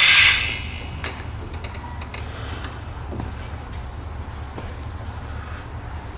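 Metal tools clattering on the lathe, fading within the first half second, then a steady low machine hum in the shop with a few faint clicks.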